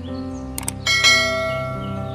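Two quick mouse-click sound effects, then a bell chime that rings out loudly and slowly fades: the notification-bell sound of a subscribe-button animation.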